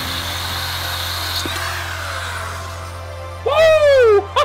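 Corded electric drill running steadily, a porcelain and tile drill bit grinding through the bottom of a ceramic coffee mug with a high, even whine. Near the end a loud tone sliding down in pitch cuts in over it.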